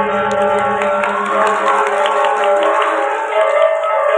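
Balinese gong kebyar gamelan playing: bronze metallophones and gongs ring in many held tones, with quick struck notes over them. A low sustained tone drops out about two-thirds of the way through.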